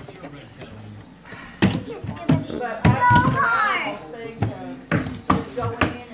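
Several sharp knocks and taps on the wooden panels of an electric-fireplace mantel cabinet as it is pried and handled during disassembly. A child's high voice calls out with rising and falling pitch about three seconds in.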